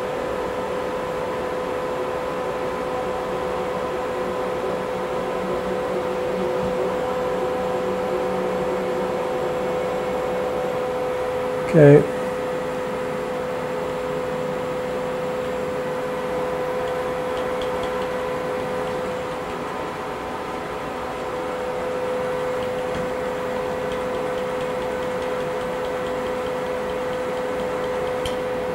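X-axis drive of a CNC-converted knee mill, its DC servo motor and ballscrew, traversing the long table under jog toward the limit switch: a steady whine on one held pitch that drops a little in level about two-thirds through as the feed is slowed. A brief voice-like sound breaks in once near the middle.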